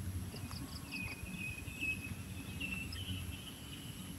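Outdoor ambience with a steady low rumble and faint bird chirping: a few quick high chirps near the start, then a warbling call that runs on for about two seconds.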